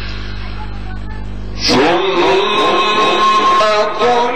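A steady low electrical hum through the PA, then, a little under two seconds in, a male Quran reciter's voice comes in over the loudspeakers, chanting a long melodic phrase of tajwid recitation with sustained, bending notes.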